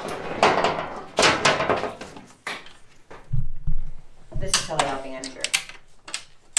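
Handling noise from a new door being fitted to a Can-Am Maverick X3 side-by-side: rustling and scraping of the panel for the first two seconds, then a couple of low thumps of the door against the frame about three and a half seconds in.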